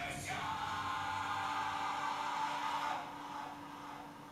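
Sustained musical chord or jingle played through a television's speakers, held for about three seconds and then dropping away.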